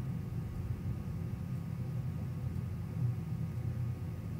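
Steady low background rumble of room noise, with no distinct events.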